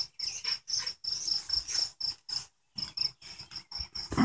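A cricket chirping in a steady, even rhythm of about four or five high chirps a second.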